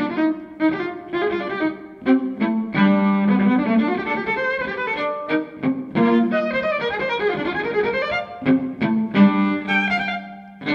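Solo violin playing a slow melodic passage, its notes often sounding in pairs, with a low note held under the moving line about three seconds in and again near the end.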